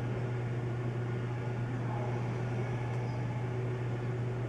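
Steady low hum with a faint even hiss: room tone, with no other sound standing out.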